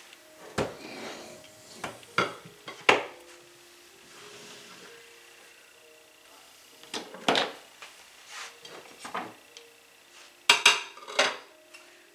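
Clinks and knocks of a glass mixing bowl and stand-mixer parts being handled: the bowl set down on the counter and the mixer's beater taken off, with a loud cluster of clatter near the end.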